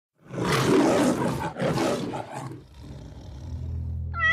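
A big cat roars twice, two long rough roars back to back, and then a low steady hum fades in near the end.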